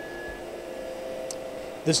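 Faint steady background hum with a few thin steady tones and a light click a little over a second in. A man's voice comes back in near the end.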